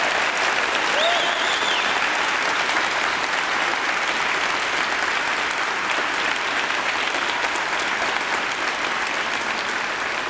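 Large audience applauding steadily, easing off slightly near the end.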